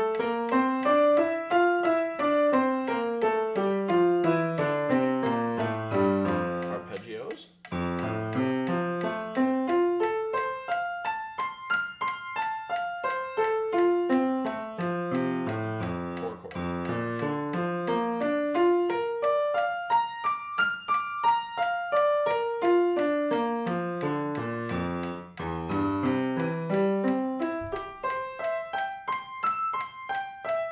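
Grand piano playing a fast, even F major scale with both hands, running down to the bass. After a short break about seven seconds in, it moves to F major arpeggios sweeping up and down the keyboard.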